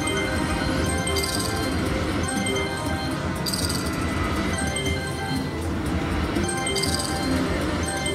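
Slot machine bonus music playing steadily as the bonus-win meter tallies up. Three short bright chime-like hits come about 1, 3.5 and 7 seconds in, as lightning strikes collect values on the reels.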